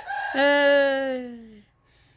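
A rooster crowing close by: one long drawn-out crow whose final note slides slowly downward and fades out.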